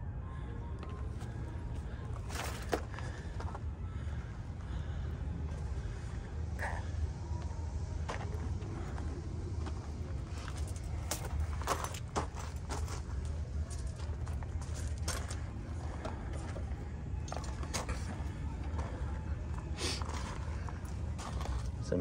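Footsteps on gravel, irregular steps and scuffs, over a steady low rumble.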